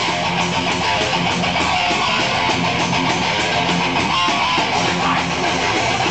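Live band playing a song at full volume, led by electric guitar, dense and continuous.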